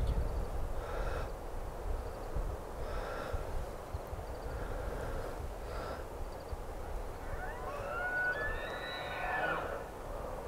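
Bull elk bugling: a high whistle that rises from about three-quarters of the way in and holds for about two seconds before breaking off near the end, over a low steady rumble.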